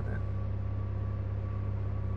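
A vehicle engine's steady low drone, with a faint steady high whine above it.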